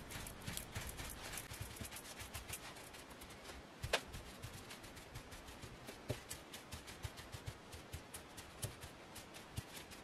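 Folded paper towel dabbed repeatedly over paper tags to blot freshly applied Distress Oxide ink: a run of faint, quick pats and rustles, with one sharper tap about four seconds in.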